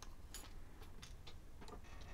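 Faint, irregular small clicks of metal fishing tackle (barrel swivels, split rings, a brass spinner blade and a treble hook) being handled and knocking together.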